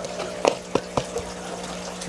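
Plastic fruit fly culture cup tapped and shaken to knock flies out, giving three sharp taps within the first second, over a steady low hum.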